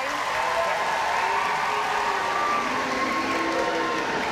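Large audience cheering and applauding steadily, a dense mix of clapping and many voices calling out together.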